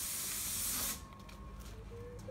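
Steady hiss of compressed air that cuts off abruptly about a second in, followed by faint ticks.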